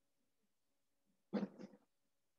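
A short call from a domestic pet, in two quick parts about a second and a half in, over a faint steady hum.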